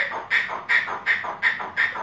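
A sulphur-crested cockatoo making a rhythmic, breathy laugh-like 'ha-ha-ha', about three short bursts a second.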